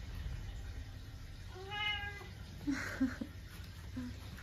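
A Munchkin cat meowing once, a single short call that rises and falls slightly, about two seconds in. A brief rustle and a couple of short soft sounds follow a second later.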